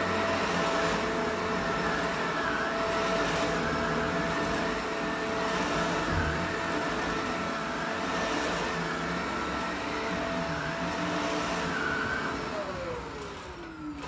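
Shark Rotator Powered Lift-Away upright vacuum (NV751) running on a rug, its motor pitch wavering slightly with each push and pull of the strokes. Near the end it is switched off and the motor winds down with a falling whine.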